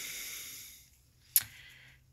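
A faint hiss fading away, then a single short, sharp click about halfway through, in a quiet small room.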